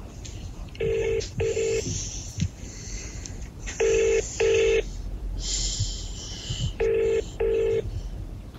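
A telephone ring tone in a double-ring cadence: two short rings, repeated three times about three seconds apart. Faint hiss and a few soft knocks sound between the rings.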